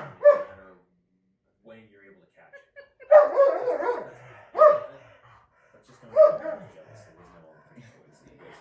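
Dog barking during rough play among a German Shorthaired Pointer and two Irish Setters: a few separate barks, one just after the start and three more from about three seconds in, spaced roughly a second and a half apart.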